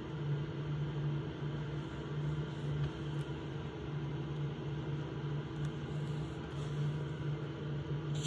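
Steady low hum with a constant hiss from a running household machine.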